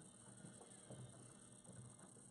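Near silence: room tone, with a few faint small clicks.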